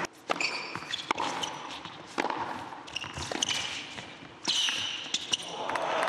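Tennis serve and rally on an indoor hard court: sharp racket-on-ball hits and bounces about once a second. Short high squeaks of the players' shoes on the court come between them.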